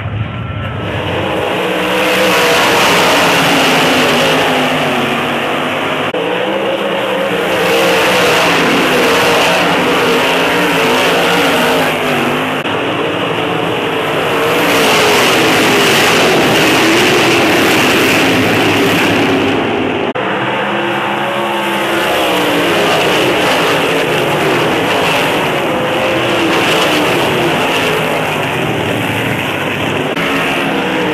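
A pack of winged 358 sprint cars racing on a dirt oval, their 358-cubic-inch V8 engines running at full throttle in overlapping, shifting pitches. The sound swells and eases several times as the cars pass.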